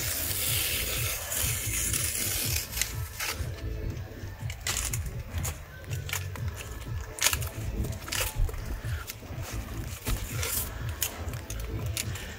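Utility knife slicing and scraping cured polyurethane expanding foam off the edge of a window frame. A continuous rasping for the first few seconds, then scattered short scrapes.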